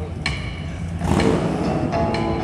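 A motorcycle engine revs up about a second in, over live rock band music.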